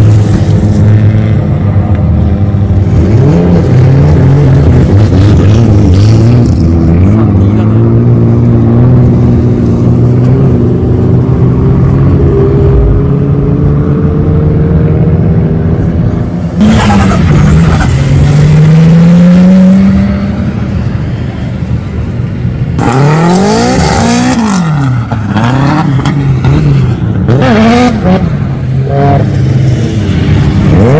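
Drift car engines running at high revs, their pitch sweeping up and down as the throttle is worked through the slides. From about two-thirds of the way through, quick rises and falls in pitch follow one after another.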